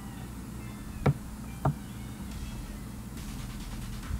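Two short, sharp clicks about half a second apart, a little past one second in, over a low steady hum.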